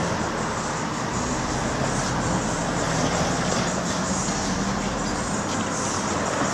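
Steady road traffic noise, with the low hum of a nearby vehicle engine running under it.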